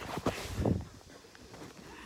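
A few soft thumps and knocks in the first second, the loudest a low thud just before the middle.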